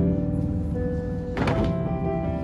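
Children's choir performance with piano accompaniment: held notes throughout, and one sharp thump a little past halfway.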